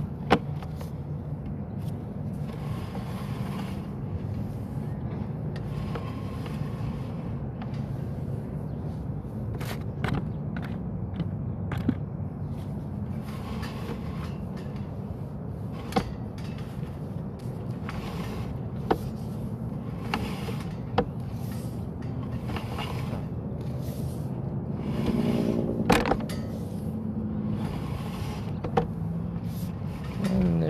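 A steady low engine hum runs throughout, with a sharp click now and then while the sewer camera's push cable is drawn back.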